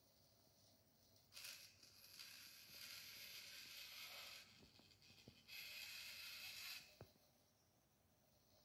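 Small hobby servo motors turning an ultrasonic sensor head: a faint whirring in two runs, the first about three seconds long and the second about a second, followed by a single click.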